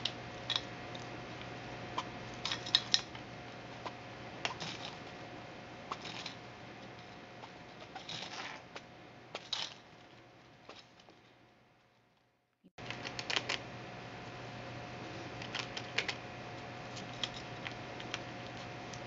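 Baby squirrel rummaging through and gnawing nuts and cereal in a plastic food bowl: scattered sharp clicks and crackles. The sound fades out to a brief silence about twelve seconds in, then cuts back in with more clicks.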